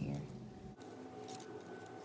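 Faint rustle and crackle of a thin strip of copper foil tape being handled and peeled, with a few short crackles about a second and a half in.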